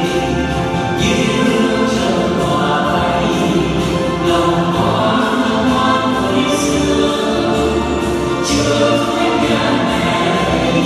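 A choir singing a hymn over instrumental accompaniment, the backing music for a liturgical flower-offering dance.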